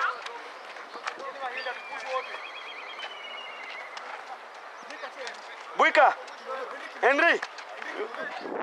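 Voices calling out across a football pitch over a steady outdoor background, with two loud shouts about six and seven seconds in.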